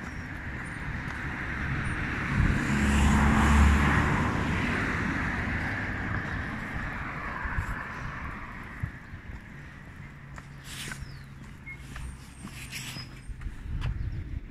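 A motor vehicle passing on the street: its engine and tyre noise build to a peak about three seconds in and fade away over the next several seconds. A few sharp clicks follow near the end.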